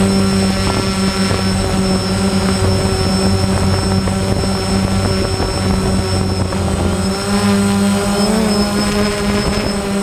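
Quadcopter drone's electric motors and propellers running with a steady multi-tone whine, heard from the camera mounted on the drone. The pitch wavers a little in the second half as the drone turns away and moves off.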